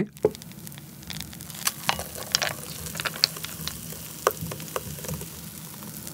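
Thick homemade soy milk pouring from a blender jug into a bowl of noodles and ice cubes: a steady soft hiss with scattered light crackles and clicks.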